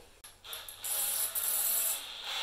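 A drill bit is fitted into a cordless drill's chuck by hand: a few light clicks, then a steady rubbing rattle for over a second as the chuck is twisted tight.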